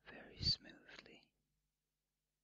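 A short unvoiced whisper lasting just over a second, too soft to make out, with one louder breathy burst about half a second in.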